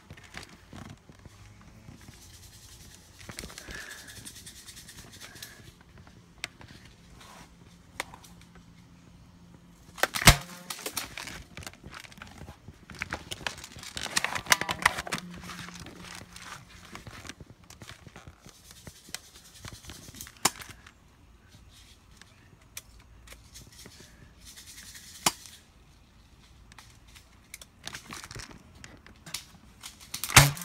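Rustling and handling noise from a camera mounted on an airsoft gun as it is carried about, with a few sharp snaps scattered through, the loudest about ten seconds in.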